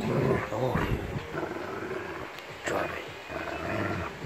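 A Rottweiler growling in play while mouthing and tugging a foam Nerf sword, loudest in the first second.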